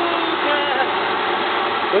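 Air-fed paint spray rig running with a steady hiss and drone, with a faint voice over it.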